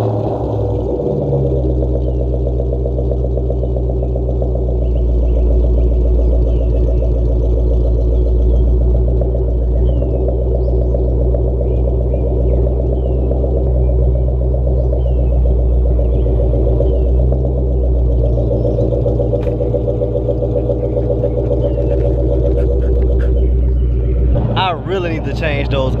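A 2003 Ford Mustang SVT Cobra's supercharged 4.6-litre V8 idling steadily just after being started.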